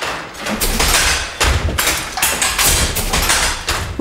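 A wooden treadle-worked Jacquard hand loom weaving, making a loud din: a steady rhythm of heavy knocks and clattering thuds, roughly one to two strokes a second.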